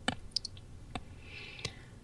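A few small sharp clicks, about four in two seconds, with a soft breath-like hiss shortly before the last one.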